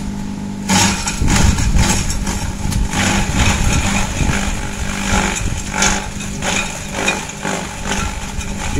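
Kelani Komposta KK100 engine-driven compost shredder running steadily. From about a second in, it chops leafy green branches as they are fed in, a loud, irregular crunching and rattling over the engine's hum.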